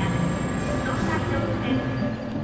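Shinkansen N700A bullet train moving along a station platform, a steady rumble.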